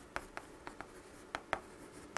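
Chalk writing numbers on a chalkboard: a string of short, sharp ticks and scrapes as each digit is stroked onto the board.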